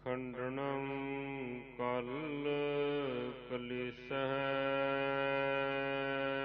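A voice chanting Gurbani in long held, gliding melodic lines over a steady drone, pausing briefly about two and four seconds in.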